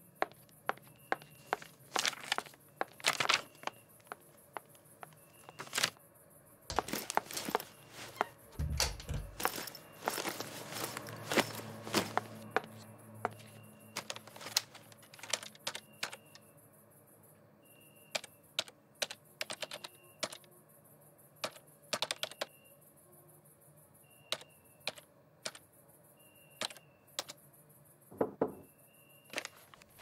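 Laptop keyboard typing: short key clicks in quick, irregular runs, with a single low thump about nine seconds in.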